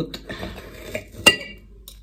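Table knife and fork cutting through a baked pizza against a plate, scraping, with one sharp clink of metal on the plate just over a second in.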